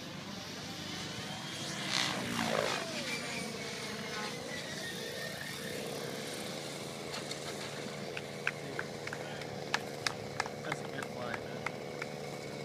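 Radio-controlled helicopter's rotor and motor: the pitch sweeps sharply down and back up as it comes in to land, then settles into a steady drone as it sits running on the ground. From about seven seconds in, a series of sharp clicks sounds over the drone.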